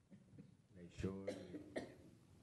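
A quiet cough from a person, a sharp first burst about a second in followed by two shorter ones.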